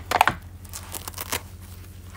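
Crinkling and rustling of a plastic bottle and the fabric cover of a bottle-holding dog toy being worked open by hand to swap in a new bottle. It is loudest in a quick cluster of rustles right at the start, then goes on in scattered softer crinkles.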